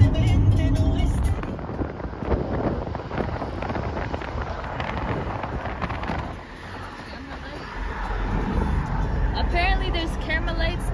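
Road and engine noise inside a moving car's cabin at highway speed: a low rumble that eases for a second or so past the middle, then returns. A voice starts near the end.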